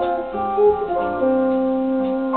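Clean-toned electric guitar, a Fernandes Stratocaster through a Clarus amplifier and Raezers Edge speaker, playing a slow jazz ballad: several notes ringing together, with new notes picked about a third of a second in and again just after a second in, the lowest one held on.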